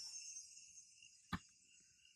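Faint, steady chirring of crickets at dusk. A single short, sharp knock comes about a second and a half in.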